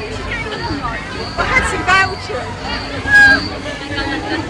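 Crowd chatter: many voices talking at once, with a few louder voices close by standing out now and then.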